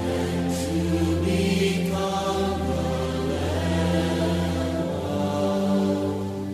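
Worship music: a choir singing long held notes over a steady low bass note.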